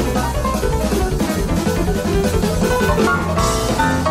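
Jazz-fusion piano trio playing at a fast tempo: grand piano in rapid runs of notes over drum kit and bass guitar.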